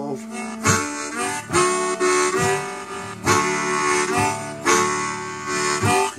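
Blues harmonica solo with sustained, held notes over an acoustic guitar strummed on a steady beat, a sharp strum just under once a second.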